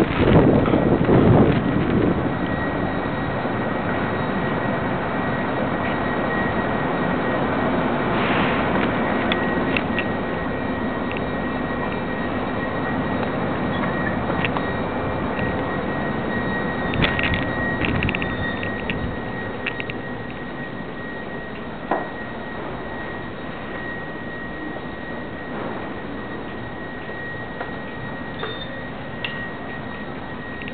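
Ride noise from a camera mounted on a moving bicycle: wind buffeting the microphone at first, then steady rolling and rattling noise with a few sharp knocks and a faint constant high tone, growing quieter about two-thirds of the way through.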